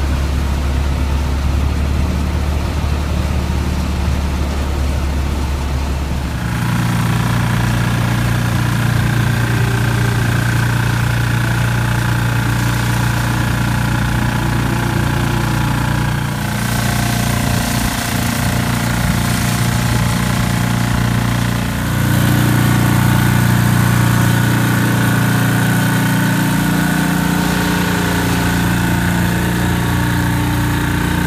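Bitimec single-brush power wash machine running with a steady, pitched mechanical hum as its brush works along the side of a motorhome. The pitch and mix of the hum shift abruptly about six, sixteen and twenty-two seconds in.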